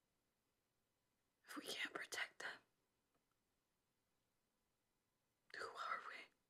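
A woman whispering two short phrases, one about a second and a half in and another near the end, with near silence between.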